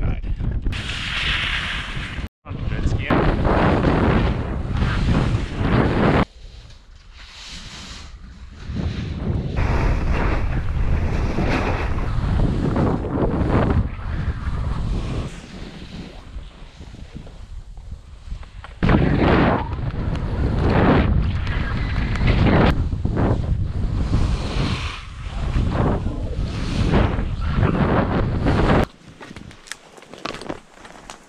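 Skiing downhill filmed on a helmet camera: wind buffeting the microphone and skis hissing and scraping through snow, loudness surging and dropping in uneven waves through the turns. A brief dropout comes about two seconds in.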